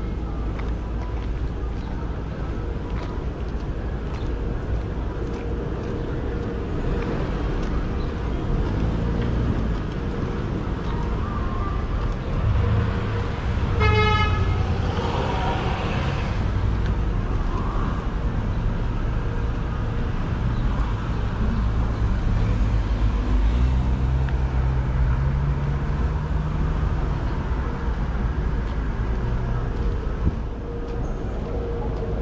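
City street traffic noise with a steady low rumble, and a single short car horn toot about halfway through.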